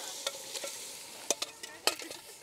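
Beans tipped from a stainless steel pot into a hanging cauldron of simmering soup, over a soft steady hiss, with four or five sharp metal clinks as the pot knocks and scrapes against the cauldron.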